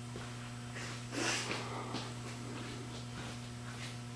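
A steady low electrical hum in a small room, with one short burst of noise, a sniff or rustle, about a second in and a few faint ticks later.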